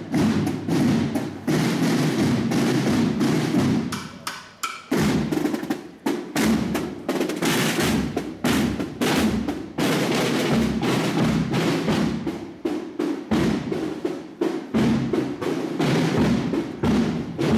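Marching band's snare drums playing a fast, steady march cadence, with a brief pause about four seconds in before the drumming resumes.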